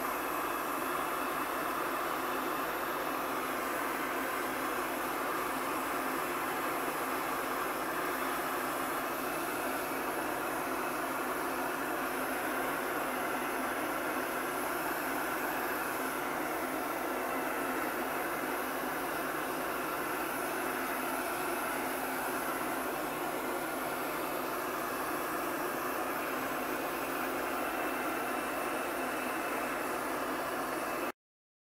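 Electric heat gun running steadily, its fan blowing hot air onto wax-coated canvas. The sound is an even rush of air and motor with no change in level.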